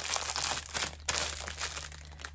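Plastic packaging from a diamond painting kit being crinkled and handled: a dense crackling rustle that dies down near the end.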